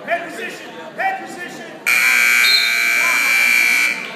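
Gym scoreboard buzzer sounding one loud, steady, high tone for about two seconds, starting about two seconds in and cutting off sharply: the end of the wrestling match's time. Before it, two short shouts from the crowd.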